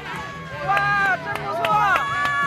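Voices calling out and exclaiming in drawn-out, sliding tones, with a few sharp clicks.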